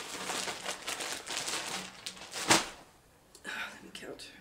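A bag rustling and crinkling as a cross-stitch project is slipped back into it, with one sharp snap about two and a half seconds in.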